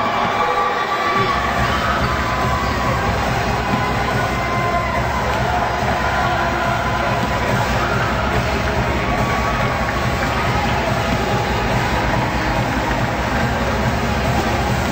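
Music playing through a basketball arena, with crowd noise and cheering over it; the bass comes in about a second in.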